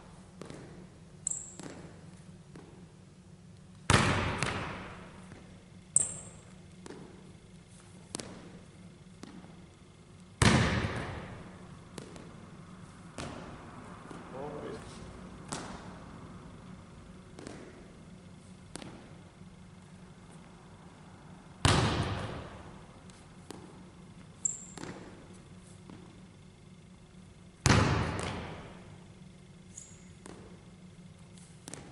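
Basketball bouncing hard on a hardwood gym floor, four single bounces several seconds apart, each ringing on through the echoing hall. Short high sneaker squeaks come between them.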